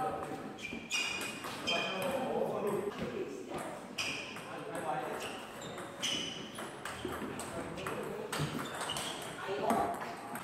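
Table tennis rally: the ball being struck by rubber paddles and bouncing on the table, a run of sharp pinging clicks about one or two a second.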